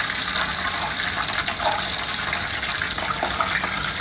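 Breaded chicken pieces deep-frying in a pot of hot vegetable oil: a steady sizzle with small crackles.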